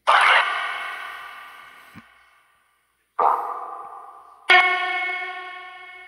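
Necrophonic spirit-box app playing DR60 sound-bank fragments through heavy echo and reverb: three sudden ringing bursts, at the start, about three seconds in and about four and a half seconds in, each fading away slowly.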